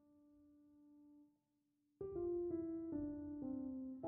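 Background piano music. A held note fades out and a short gap follows; about halfway through, a run of separate notes resumes, stepping down in pitch.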